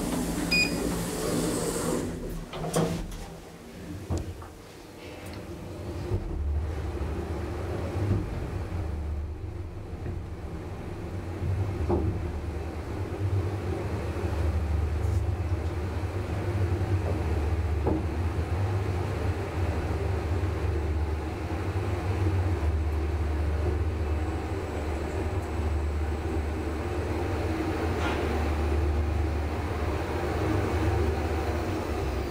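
Traction elevator car (a 1964 ASEA-Graham lift, modernised) answering a button press with a short beep, then, after a brief clatter, setting off and travelling upward with a steady low hum, broken only by a few faint clicks as it passes floors.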